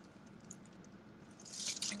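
Quiet handling of a plastic takeout clamshell container: a few faint clicks, then plastic crinkling that grows louder near the end.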